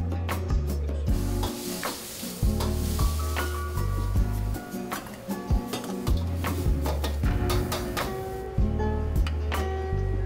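Food sizzling as it is stir-fried in a hot wok, a hiss that starts about a second in and dies away near the end. Background music with a steady beat and bass line runs underneath.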